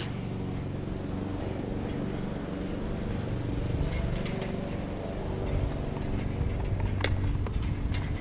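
Wind rushing over the microphone and bicycle tyres rolling on asphalt, a steady low rumble, with a few sharp clicks near the end.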